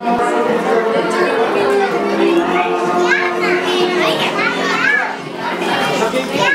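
Children's high voices chattering in a crowded room over background music; the music's held notes fade about halfway through and the children's voices take over.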